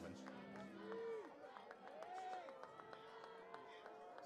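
Faint stadium field sound: distant voices calling out now and then over a light murmur of crowd noise.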